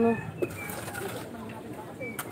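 A man's drawn-out spoken "ano" trails off in the first moment, then a faint outdoor background with a few faint, high bird chirps.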